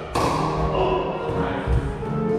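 A single sharp crack of a pickleball paddle hitting the plastic ball just after the start, over background music with sustained tones.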